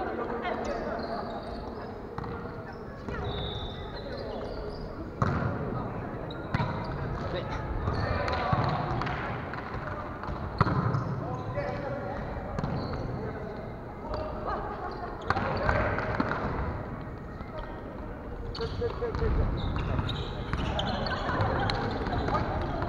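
A volleyball being struck and bouncing on a wooden gym floor, a few sharp smacks several seconds apart, echoing in a large hall, over players' voices calling and chatting.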